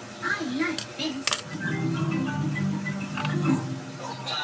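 Cartoon background music playing on a television, holding a few steady notes through most of the clip. There is a brief bit of voice at the start and two sharp clicks about a second in.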